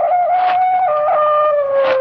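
Dog howling: one long note that holds steady and then sinks slowly in pitch, with a second, higher note overlapping it in the first second.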